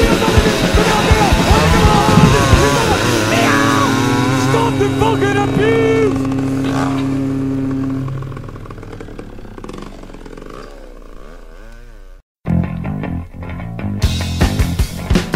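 Hardcore punk band with distorted electric guitar and drums ending a song: the full band plays loud for the first few seconds, then a held chord rings on with high guitar notes sliding up and down, fading out over several seconds. A brief gap of silence about twelve seconds in, then the next track starts with loud guitar and drums.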